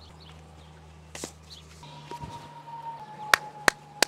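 Two sharp smacks close together near the end, like hand claps, over a faint steady hum.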